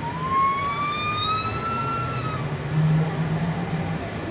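Škoda 27Tr Solaris trolleybus's electric traction drive whining, the whine rising steadily in pitch for about two and a half seconds and then fading as the bus accelerates, over a low hum that swells near the end.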